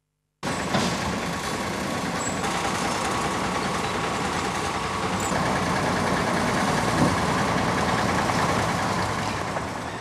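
A heavy truck's engine running steadily, powering its hydraulic log-loader crane as it lifts cut tree trunks. The sound starts abruptly about half a second in.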